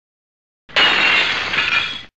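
Glass-shattering sound effect: a sudden crash of breaking glass about two-thirds of a second in, lasting just over a second, then cutting off.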